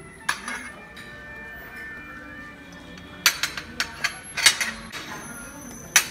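Metal spoons clinking and tapping against crockery: one clink near the start, then a quick run of sharp clinks between about three and five seconds in.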